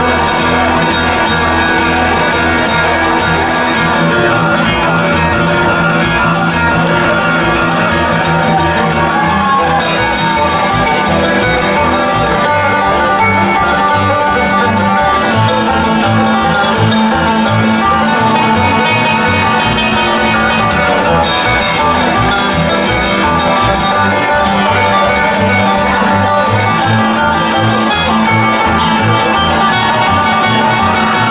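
Bluegrass trio playing live with no vocals: banjo, acoustic guitar and upright bass, the bass setting a steady pulse.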